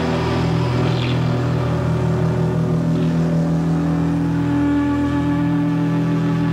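Loud, sustained distorted drone from a live rock band's amplified guitars, with no drums: several low pitches hold steady, and a higher one swells about two-thirds through.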